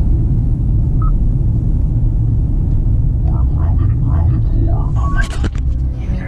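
Steady low rumble of road and engine noise inside the cabin of a moving 2018 Kia Optima LX. A short beep sounds about a second in. From about three seconds in, a voice plays over the car's speakers from Bluetooth audio.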